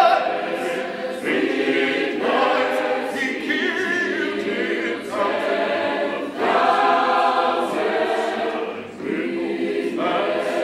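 Mixed choir singing a cappella in a gospel spiritual style, in short phrases with brief breaks between them.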